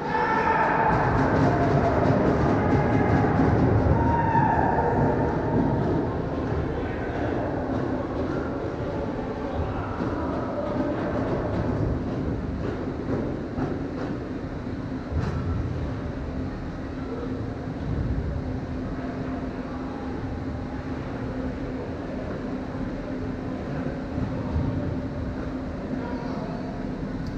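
Ice arena ambience: a steady low hum under a rumbling wash of noise, louder and busier over the first five or six seconds.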